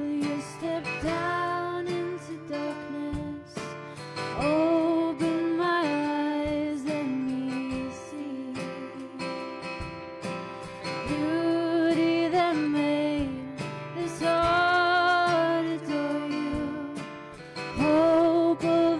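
Live contemporary worship band: women's voices singing a slow melody over strummed acoustic guitar and electric guitar.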